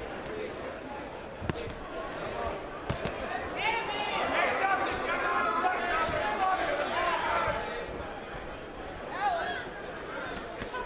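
Boxing arena crowd shouting, loudest in the middle, with occasional sharp thuds of gloved punches landing in the ring.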